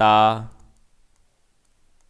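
A man's voice holds out the end of a word for about half a second. Then come faint, scattered clicks of a stylus on a digital writing tablet as handwriting is drawn.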